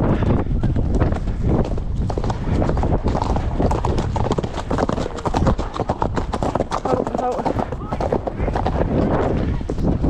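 Horses' hooves on a dirt track: a continuous, irregular patter of hoofbeats from the ridden grey horse and the horse just ahead, with a low rumble of movement and wind underneath.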